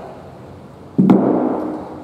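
A light hand dumbbell dropped onto a wooden floor: one sharp thud about a second in, with a short ringing decay.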